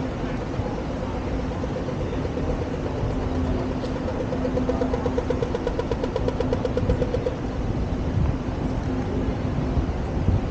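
City street traffic noise with a steady hum. A pedestrian crossing signal gives its rapid walk-phase ticking from about four seconds in, stopping about seven seconds in.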